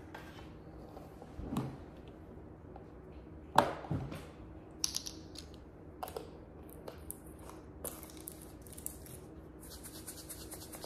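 A small plastic bottle of smelling salts being handled on a tabletop: scattered clicks and knocks as its cap comes off and is set down, the sharpest about three and a half seconds in. Near the end comes a quick, light rattle as the bottle is shaken.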